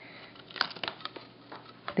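Chef's knife cutting into firm peeled raw yuca on a cutting board: a few short crisp cuts and clicks.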